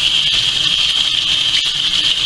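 Kitchen faucet running steadily, water pouring over hair as it is rinsed and splashing into a stainless steel sink.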